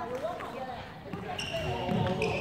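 Voices talking in a large hall, with light knocks from play on the wooden court and a short high squeak near the end.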